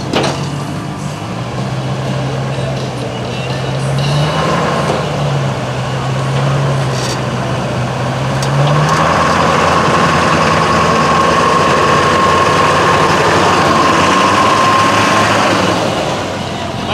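Lifted Duramax diesel mud truck running at low speed as it drives down off a trailer; the engine gets louder about nine seconds in, with a steady high whine over it.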